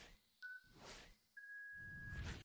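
Countdown timer beeps: a faint short beep with a click at its start about half a second in, then a longer steady beep from near the end as the count reaches zero, with soft hissing noise between the beeps.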